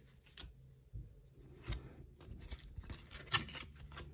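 Trading cards being slid off a hand-held stack and flipped by hand: a few short, soft paper scrapes and flicks at uneven intervals, the loudest a little after three seconds in.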